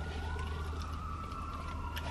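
Faint emergency-vehicle siren wailing, one slow rise and fall in pitch, heard from inside a car over a steady low hum.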